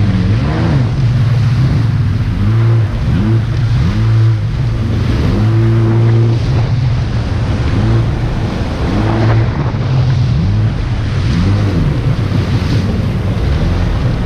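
Jet ski engine running at speed, heard from on board, its pitch rising and falling again and again. Water rush and wind on the microphone sit under it.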